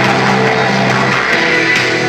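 Live band music, loud and steady: electric guitars ringing out sustained chords, with a change of chord about a second and a half in.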